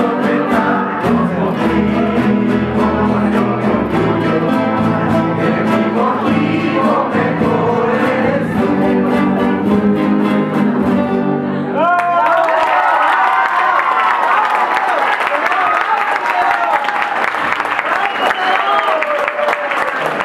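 A rondalla, a group of acoustic guitars strummed together over an upright bass, with voices singing, plays to the end of its song about twelve seconds in. The audience then applauds and cheers.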